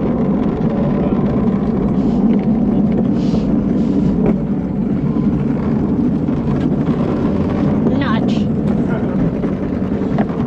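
Gravity luge cart's wheels rolling on a concrete track with a steady low rumble, slowing towards the finish.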